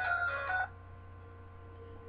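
A short steady electronic-sounding tone with a few pitches, lasting about half a second, then cutting off to quiet room tone with a low mains hum.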